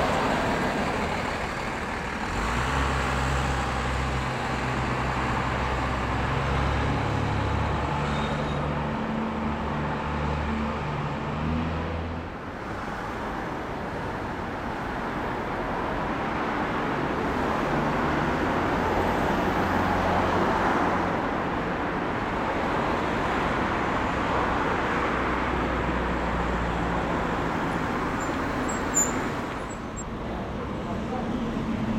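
Diesel bus engine running and pulling away: a low engine note that steps up and down in pitch for the first twelve seconds or so. After a break it gives way to steady street traffic noise with buses running, and there is a short click near the end.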